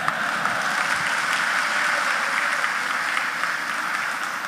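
Audience applauding, a dense, steady clapping that rises in at once and thins a little towards the end.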